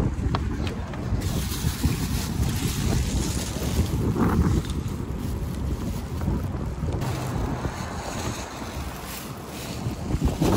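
Wind buffeting the microphone: a low rumble that rises and falls in gusts.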